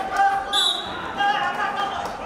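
Voices talking and calling in an echoing sports hall during a wrestling bout, with a short high whistle-like tone about half a second in.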